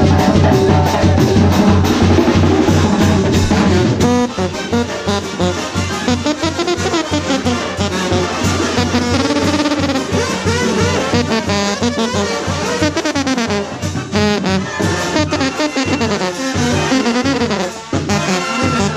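A Mexican brass band plays live, with sousaphones, trombones, trumpets and clarinets over a steady beat. A loud, full passage heavy in low sousaphone notes gives way about four seconds in to a lighter, moving melody.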